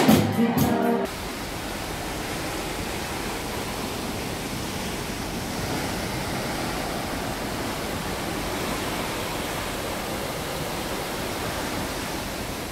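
Live band music with singing cuts off about a second in. It gives way to a steady rushing noise of the sea and wind alongside a moving ship.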